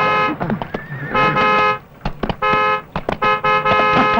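Car horn honked three times, the first two short and the third held longer.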